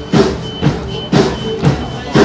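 Acoustic drum kit played in a steady pop beat, with strong hits about twice a second and cymbals ringing, over a backing track of the song.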